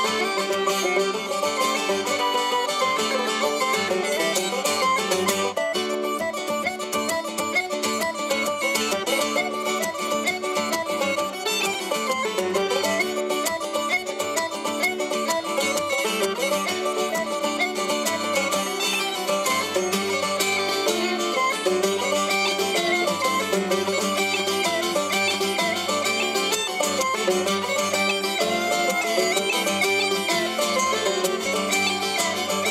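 Uilleann pipes playing a lively jig melody, with the drones sounding steadily underneath, accompanied by banjo and strummed acoustic guitar.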